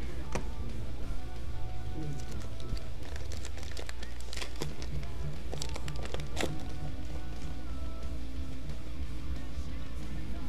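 Foil wrapper of a Topps baseball card pack crinkling as it is torn open, with a cluster of sharp crackles in the middle, over steady background music with guitar.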